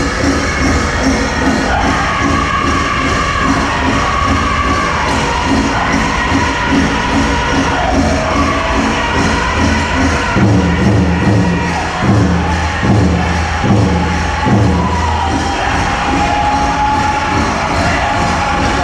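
Powwow drum group singing a grass dance song in high voices over a steady, evenly repeating big-drum beat. About ten seconds in, the drumbeats grow heavier for several seconds.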